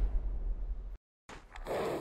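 Low rumbling background noise from an animated film's soundtrack, fading over the first second, cut off by a brief dead-silent gap, then returning more faintly.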